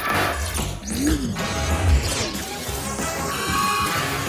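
Cartoon action music mixed with sound effects: sudden crash-like hits, the loudest about two seconds in.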